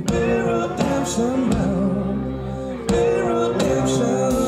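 Live country-rock band playing: pedal steel guitar gliding between sustained notes over drums and upright bass, with singing.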